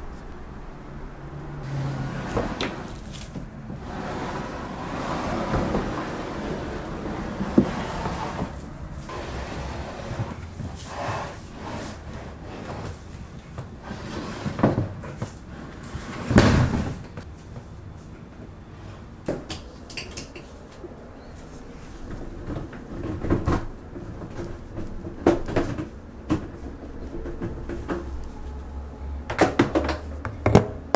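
A Kuppet plastic portable twin-tub washing machine being handled while it is set up: scattered knocks, clunks and rattles as the machine, its lid and its hose are moved, with one heavier thump about halfway through.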